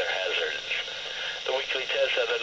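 A weather radio's speaker playing the NOAA Weather Radio announcer's voice reading the weekly test message, with a pause of about a second in the middle. A steady hiss of radio static runs underneath.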